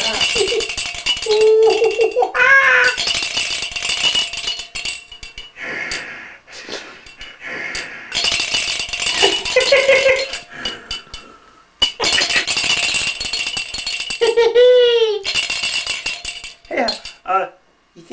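A toy rattle shaken hard and fast in several spells with short pauses, mixed with a man's laughing and exclamations.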